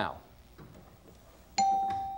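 A quiet pause, then about a second and a half in a single electronic chime rings out, one steady note that fades slowly: the game show's sound cue for a clue being revealed on the board.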